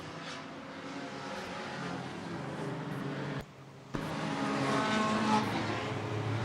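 A pack of enduro race cars running laps on an oval track, several engines sounding together at once. The sound briefly drops out about three and a half seconds in.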